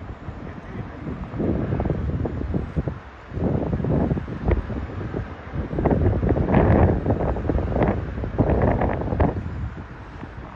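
Wind buffeting the microphone in irregular gusts, with a brief lull about three seconds in and the strongest gusts in the second half.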